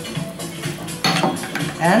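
Background music, with a clink of glass about a second in as the glass bottle is set down on the table.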